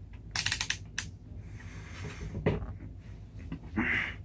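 A multimeter's rotary selector dial being clicked through its settings: a quick run of small clicks in the first second. Then rustling and a single knock as the test leads are handled.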